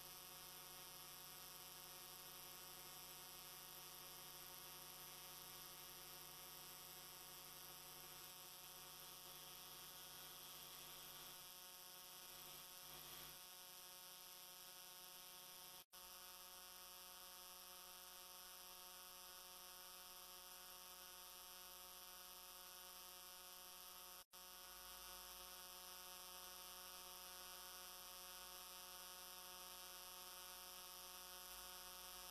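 Near silence: a faint, steady electrical hum with no other sound, cutting out briefly twice.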